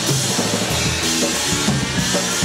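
Punk rock band playing live, with a driving drum kit, bass drum and snare hitting steadily under the guitars.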